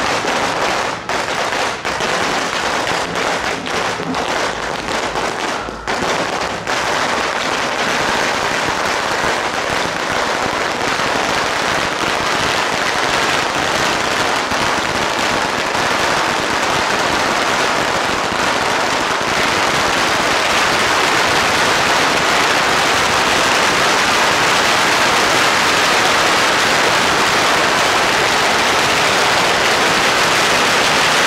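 Long strings of red firecrackers laid on the road going off: separate cracks with short gaps for the first few seconds, then a dense, unbroken rapid crackle that gets louder about two-thirds of the way through.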